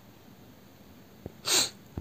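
A short, sharp breath of air close to the microphone, about a quarter second long, near the end, just before speech resumes; a faint click comes shortly before it.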